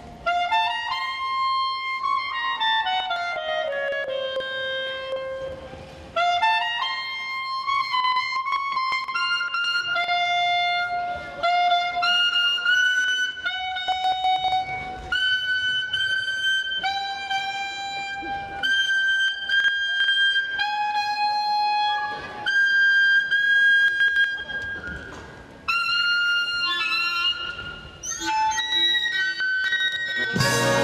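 A clarinet playing alone, a single melodic line with no band under it. It has a stepwise falling run early on, then rising figures and long held high notes, with brief breaks about six seconds in and near twenty-five seconds.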